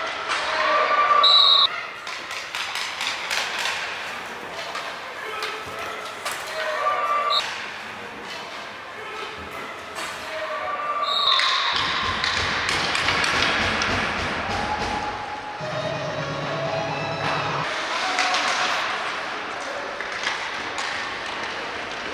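Indoor ice hockey game sounds: sharp clacks of sticks and puck, and shouts from players and spectators. About eleven seconds in, a goal is scored and cheering and shouting swell up.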